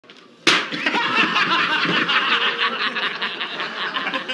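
A joke-shop cigarette load goes off in a lit cigarette with a single sharp bang about half a second in, followed by a man's loud, sustained laughter.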